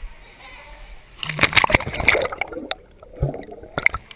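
A toddler jumping into a swimming pool: a splash about a second in, then water sloshing and gurgling close to the microphone, with a shorter splash near the end.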